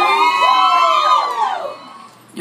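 Live male soul vocal: a long high sung note that arches and slides down, fading out near the end, with audience whoops mixed in.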